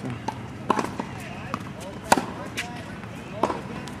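Tennis ball impacts on an outdoor hard court: sharp pops of the ball off the racket strings and the court surface during a groundstroke rally. The three loudest come a little over a second apart, and the loudest is about two seconds in.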